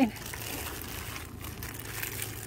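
Steady background hiss with a faint low hum and light rustling, with no distinct event standing out.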